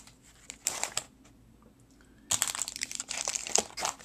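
Snack packages, crinkly plastic wrappers and cardboard boxes, rustling and crinkling as they are handled and packed back into a box: a short burst about half a second in, then a longer stretch of crinkling in the second half.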